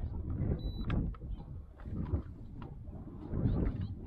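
Wind rumbling on the microphone, with a few light clicks and knocks scattered through it.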